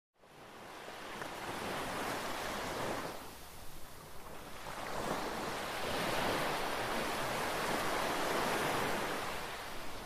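Sea surf: a steady rushing of waves that fades in from silence, swells, dips briefly about three seconds in, then swells again for a longer stretch.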